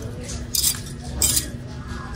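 Metal clothes hangers scraping and clinking along a metal rack rail as garments are pushed aside, in two short rattles, about half a second and about a second and a quarter in.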